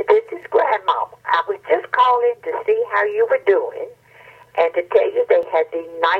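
A voice message playing on a telephone answering machine: one person talking, with a short pause about four seconds in, over a faint steady low hum.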